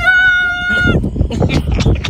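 A high, drawn-out call held steady for about a second, then a run of gritty scrapes and crunches as a small shovel digs into a deep, narrow hole in sand.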